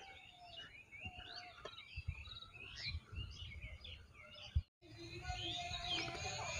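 Several birds chirping and calling, many short rising and falling chirps overlapping, with scattered low bumps underneath. The sound cuts out completely for a moment about four and a half seconds in.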